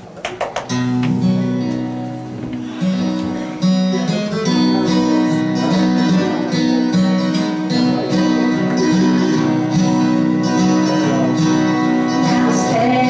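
Several acoustic guitars strumming and picking an instrumental gospel tune, without singing. The playing starts about a second in, after a few sharp taps, and gets louder near four seconds in.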